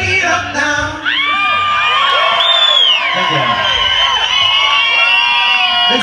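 The band's last notes die away about a second in, then a club audience cheers and whoops, with a long high whistle among the shouts.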